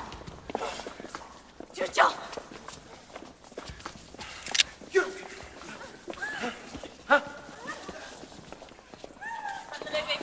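Footsteps shuffling on a hard floor, with a few sharp knocks, under scattered short voices from a watching crowd. It is a tense hush between bursts of crowd shouting.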